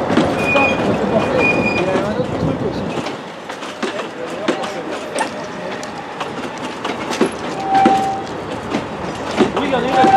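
Vintage passenger coaches of a heritage train rolling slowly past, their wheels clicking and knocking irregularly over the track, with a few brief squeaks from the wheels.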